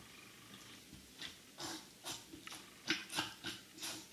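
Thick gunge squelching in and around a gunge-filled Osiris D3 sneaker as the foot shifts inside it: about eight short, irregular wet squishes, starting about a second in.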